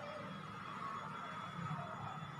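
Steady low background hum with a faint high tone, and no distinct clicks or knocks.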